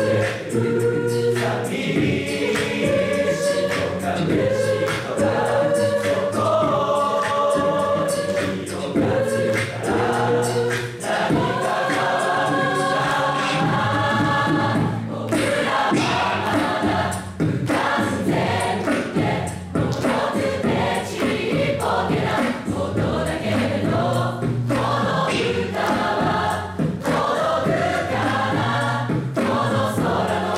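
A large mixed choir of male and female voices singing a cappella, with no instruments, in continuous song.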